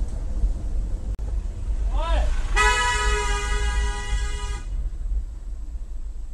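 A vehicle horn held for about two seconds, one steady tone, over the low rumble of engine and road noise. Just before it there is a short exclamation from a voice.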